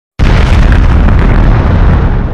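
Explosion sound effect: a very loud, deep blast that starts abruptly a fraction of a second in and keeps up as a dense rumble without letting up.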